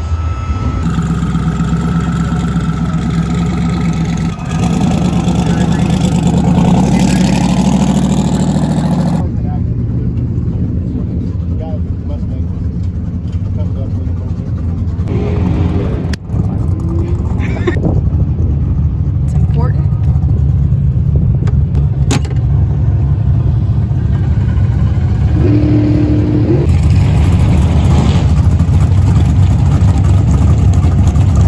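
Car engines running with a steady low rumble. The sound changes abruptly about nine seconds in and again near the end.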